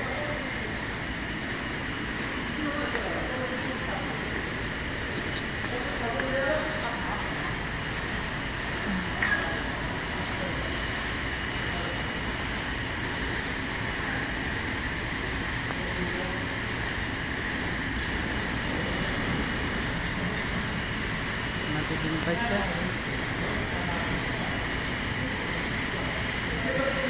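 Indoor ambience: a steady hum with a few faint, indistinct voices now and then, and a brief click or knock about nine seconds in.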